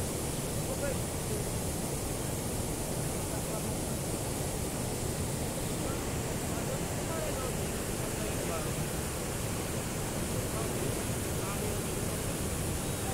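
Water overflowing a dam's spillway: a steady rushing roar of turbulent whitewater pouring and churning, with shallow floodwater running over the concrete in front.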